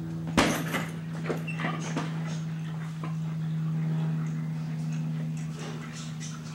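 A hanging heavy punching bag is struck with one sharp thud about half a second in, followed by a few lighter knocks and rattles as it swings. A steady low hum runs underneath.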